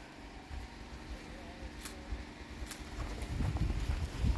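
Wind rumbling on the microphone, growing stronger in the last second as the camera is moved, with two short clicks about two and two and a half seconds in.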